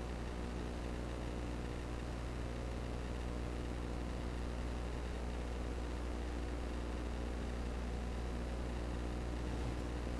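Steady low electrical hum with a constant hiss underneath, unchanging throughout.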